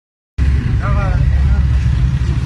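Loud, steady low rumble with distant voices calling faintly about a second in.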